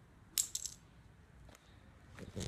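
Small toy car clattering on concrete: a short cluster of quick sharp clicks about a third of a second in, then one faint click past the middle.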